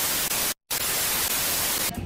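TV-static white-noise sound effect for a video glitch transition: a steady hiss that cuts out for a moment about half a second in, then resumes.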